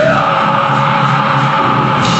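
Metal-hardcore band playing live, loud: distorted guitars and drums under a long held harsh vocal scream.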